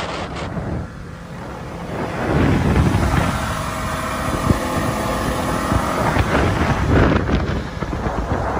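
Motorboat running at speed: the engine's steady drone under rushing water and wind buffeting the microphone. It grows louder about two seconds in.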